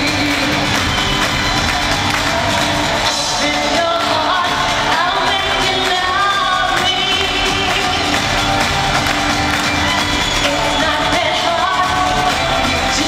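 Live pop concert music recorded from the audience: a lead vocal sung over a band with drums, at a steady high level throughout.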